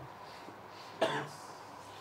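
A person coughs once, a single short cough about a second in, over a steady low room hum.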